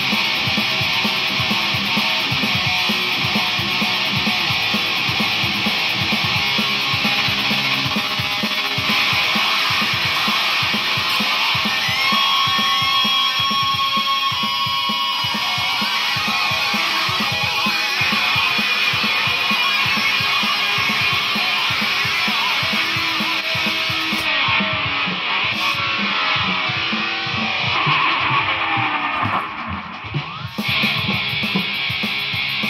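Distorted electric guitar played through an effects processor, dense heavy-metal-style riffing with a few held notes about midway. The sound dips briefly near the end.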